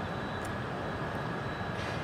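Steady outdoor background noise, an even low rumble with no distinct events.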